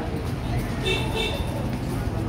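Busy street traffic din: a steady low rumble with background voices, and two short, high horn toots about a second in.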